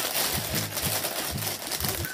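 Thin clear plastic packaging bag crinkling as hands handle it.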